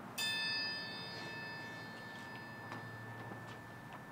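A metal triangle struck once with a metal beater, its clear high ring fading away over about three seconds.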